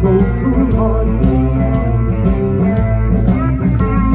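Live blues band playing: electric guitars over a drum kit, with a steady beat of cymbal hits.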